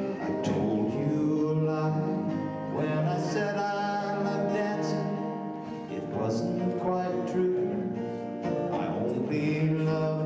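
Live acoustic country waltz: several acoustic guitars strummed and picked in a steady rhythm, with a voice singing over them.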